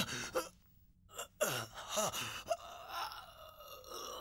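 A man sobbing with gasping breaths and broken, wordless cries, a few of them falling in pitch.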